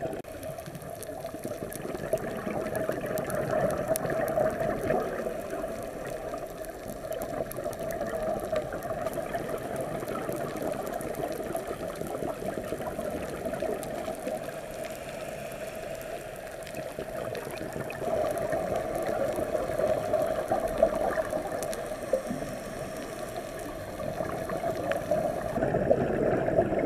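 Underwater sound through a camera housing: a scuba diver's regulator breathing, with exhaled bubbles swelling louder and fading every several seconds over a steady muffled hiss.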